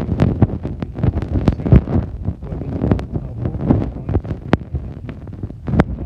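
Wind buffeting the microphone, a dense low rumble with many irregular crackling knocks and clicks.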